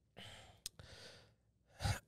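A man breathing out softly into a close microphone, with one small click partway through and a short intake of breath just before he speaks again.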